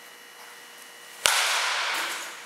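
Baseball bat striking a pitched ball once with a sharp crack about a second in, followed by a hiss that fades over about a second.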